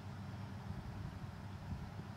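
A low, steady outdoor rumble with no distinct impact or call in it.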